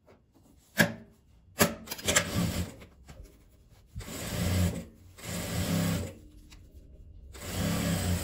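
Industrial sewing machine stitching through fabric and zipper tape in four short runs of about a second each, stopping in between, with two sharp clicks in the first two seconds.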